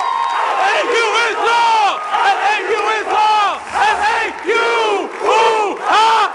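A group of fraternity brothers shouting loud, repeated calls, many men's voices overlapping in rising-and-falling hoots about twice a second.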